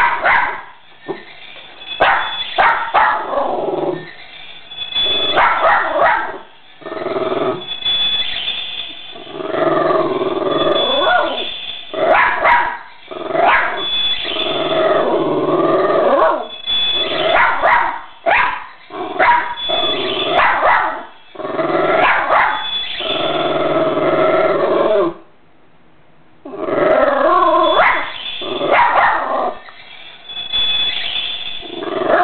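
A West Highland White Terrier barking and yipping in repeated bursts, with a short quieter pause near the end.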